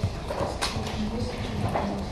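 A faint, low voice with a couple of short soft clicks, quieter than the speech around it.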